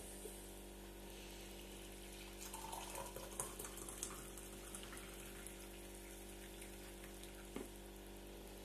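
Coffee poured from a glass French press into a mug: a splashing trickle from about two and a half seconds in, lasting a couple of seconds, over a steady background hum. A light knock near the end.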